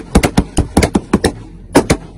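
Rapid, irregular gunfire: about a dozen sharp shots in two seconds, in quick clusters, with a short pause before the last two.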